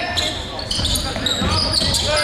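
Basketball game sounds in a large gym: a ball bouncing on the hardwood floor with a few sharp knocks, sneakers squeaking in short chirps, and voices echoing in the hall.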